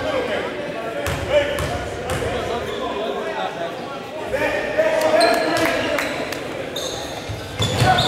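A basketball bouncing a few times on a hardwood gym floor, sharp knocks that echo in the hall, over the murmur of people talking.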